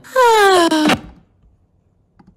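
A cartoon teenage girl's voice letting out one long, falling wail, lasting just under a second.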